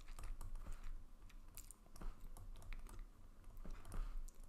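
Faint, irregular light clicks and taps of a stylus writing by hand on a tablet, over a low hum.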